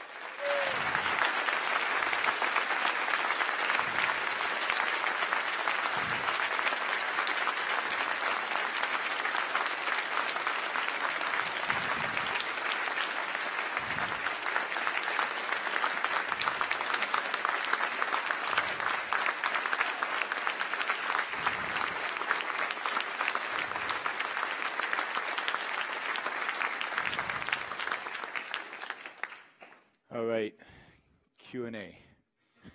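A large audience applauding steadily for nearly half a minute, then dying away just before the end.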